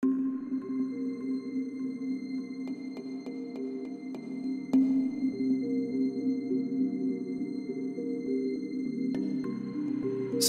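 Ambient background music of sustained low notes that shift in pitch every second or so, with a few light ticks around the middle.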